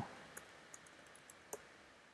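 A few faint, scattered computer keyboard keystrokes in near silence.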